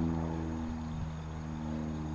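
Steady low motor hum at constant pitch.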